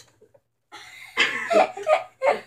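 A boy's stifled laughter in short bursts, starting about a second in after a near-silent moment.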